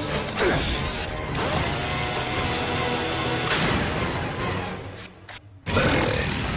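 Cartoon soundtrack: music mixed with mechanical sound effects. A falling swoop comes in the first second, then a sudden loud burst about halfway through and a brief drop just before another burst near the end.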